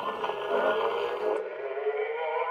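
Portable wind-up gramophone playing a 78 record through its acoustic soundbox: thin, narrow-sounding music with held notes. It shows the spring motor and soundbox are working.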